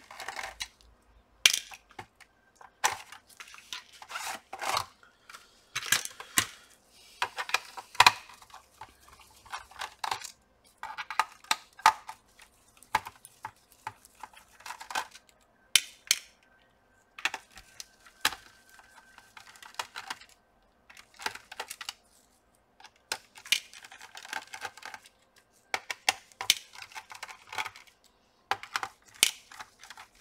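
A screwdriver and small screws clicking and clattering against a laptop's plastic bottom case as the back screws are undone and lifted out, with screws dropped into a plastic parts box. The sounds are irregular sharp clicks and small rattles, several every few seconds.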